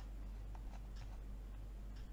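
A handful of soft, faint clicks from a computer mouse's scroll wheel as a web page is scrolled, over a steady low electrical hum.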